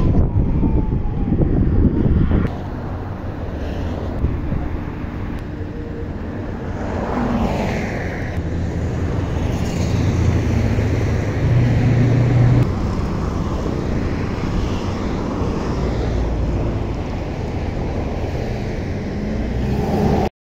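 Roadside highway traffic noise: vehicles passing and running, with a low rumble from wind on the microphone. A vehicle engine hum grows louder for a couple of seconds near the middle, and the overall level drops after about two seconds.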